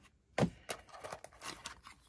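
Crinkly plastic blind-bag packets being handled, with one sharp click just under half a second in and then small scattered crackles.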